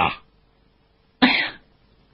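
One short cough from the male audiobook narrator about a second in, with a faint steady hum beneath.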